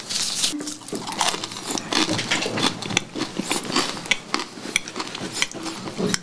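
Food and utensils being handled close to the microphone: a steady run of small, irregular clicks, taps and crackles.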